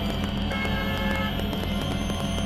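Experimental synthesizer drone music: a dense, steady low drone under a noisy, crackling texture. A brief chord of steady high tones comes in about half a second in and stops just under a second later.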